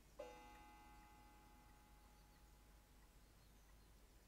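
Near silence, broken about a fifth of a second in by a faint ringing tone that fades away over about two seconds.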